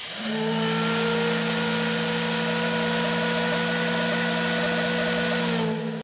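A steady hiss over a held drone of several low tones, fading out near the end.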